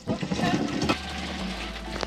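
Grape crusher working through red grapes, the crushed fruit and juice dropping into the pot beneath it: a steady mechanical churning with a low hum that settles in about halfway through.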